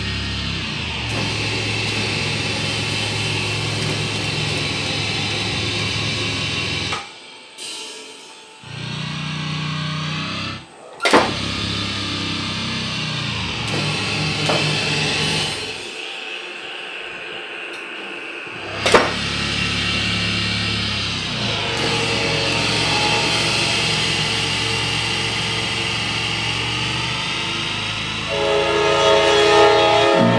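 Heavy electronic doom drone played on hand-operated, custom-built steel controllers: sustained low grinding tones that drop out twice, with two sharp hits a few seconds apart. Near the end a louder, pulsing riff of pitched notes comes in.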